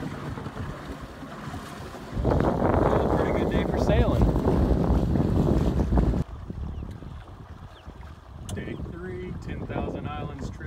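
Wind on the microphone and water rushing past the hull of a small sailboat under sail, close-hauled. The rush is loud from about two seconds in, then cuts off suddenly about six seconds in to quieter water sounds.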